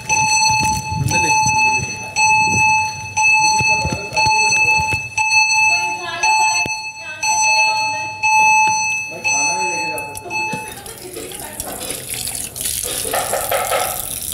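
An electronic alarm buzzer sounding in repeated beeps of about a second each, with short gaps, under people talking; it stops about ten and a half seconds in, giving way to a broad noisy background.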